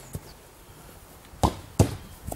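A leather football being kicked. There is a faint knock just after the start, then two sharp thuds about a third of a second apart near the end.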